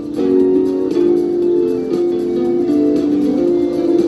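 Guitar playing a melody, its notes changing every half second to a second.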